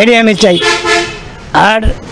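A vehicle horn honks once, a steady tone lasting just under a second, starting about half a second in, between bits of a man's speech.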